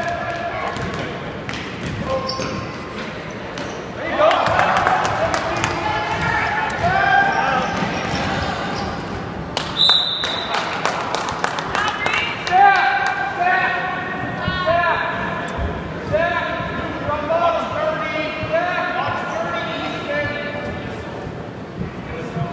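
Indoor youth basketball game: a basketball bouncing on the gym floor amid spectators' shouting voices echoing in the hall, with a short referee's whistle blast about ten seconds in.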